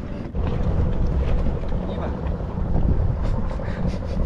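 Wind buffeting the microphone in a steady low rumble, over choppy sea water lapping at a small open boat.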